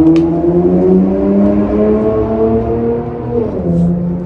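A motor vehicle's engine running nearby, its pitch climbing steadily for about three seconds as it accelerates, then dropping suddenly near the end, as at a gear change, and holding steady.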